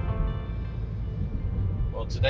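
Steady low road and engine rumble inside the cabin of a diesel Citroën Grand C4 Picasso driving at motorway speed. Soft background music fades out in the first half second.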